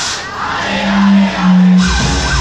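Club dance music from a DJ mix. The beat drops out briefly, two long held low notes sound, and the full beat comes back in near the end.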